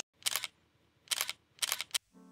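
Camera-shutter sound effect: three short, sharp clicks, the last two close together.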